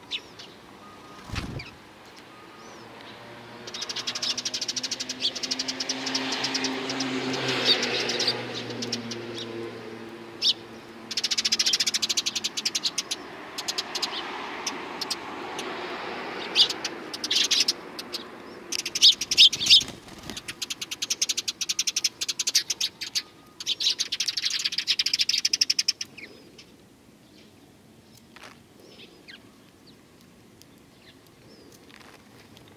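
Eurasian tree sparrows chirping in several long spells of rapid, high chatter. A vehicle's low hum passes underneath in the first third.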